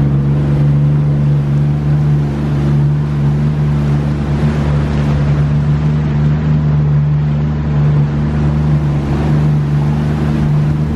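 Jet ski (personal watercraft) engine running at a steady pitch while cruising, with a hiss of water and wind under it.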